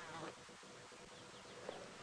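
Faint buzzing of a flying insect over quiet bush ambience.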